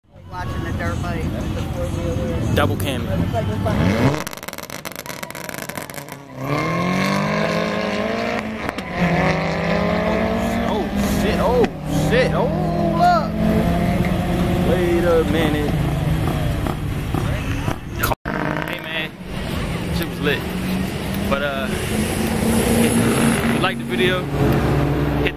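Drag-racing cars launching off the line and accelerating hard down the strip, engine pitch climbing, dropping back at each upshift and climbing again.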